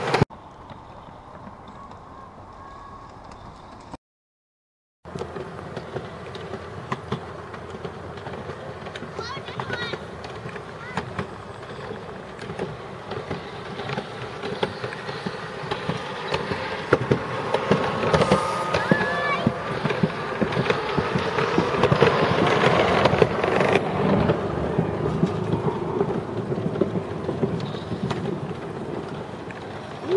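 Ride noise on a moving chairlift: a steady noise full of small clicks and knocks that grows louder toward the middle, with faint voices in it. Dead silence for about a second near the start, where the footage is cut.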